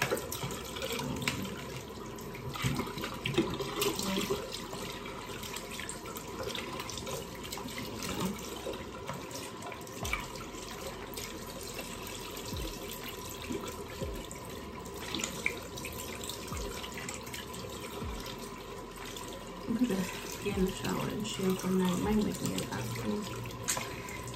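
Tap running steadily into a sink while a soap dish is rinsed out by hand, with scattered small knocks and splashes.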